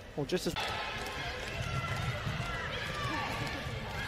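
Indoor floorball arena ambience: a steady murmur of court and crowd noise, with a short voice or shout about half a second in.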